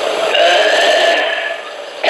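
A man's voice holding a long, slightly wavering sung note, as in chanting a line of a devotional hymn, fading away near the end.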